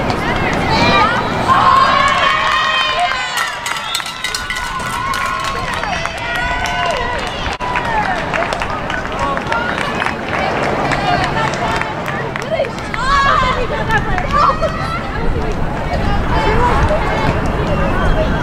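Overlapping shouts and calls from players and spectators at a soccer match, no single clear speaker, over crowd chatter.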